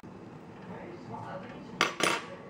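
A sharp, ringing clink of metal kitchenware near the end, after a stretch of soft handling noise.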